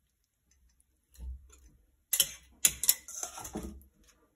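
Metal kitchen tongs clicking and tapping against a glass jar as baby artichoke pieces are dropped in: a soft thud about a second in, then several sharp clicks in the second half.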